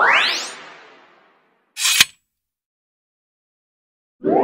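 Added editing sound effects: a rising whoosh sweep that fades out over about a second, then a short hiss ending in a sharp click about two seconds in, with dead silence between them.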